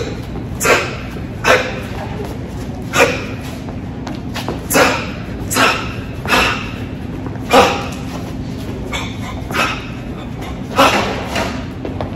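A man's short, forceful exhaled breaths as he throws shadowboxing punches, about ten sharp bursts at an irregular pace, over a steady low hum.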